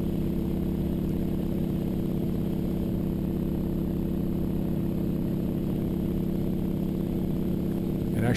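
North American AT-6D's nine-cylinder Pratt & Whitney R-1340 Wasp radial engine droning steadily in flight, heard from inside the cockpit.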